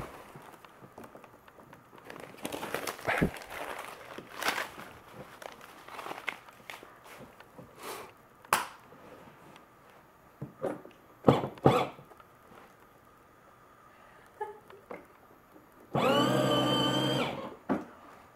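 Scattered knocks and clicks of hard plastic as a toddler handles a ride-on toy car. Near the end comes one loud, steady, low buzzing sound lasting about a second and a half.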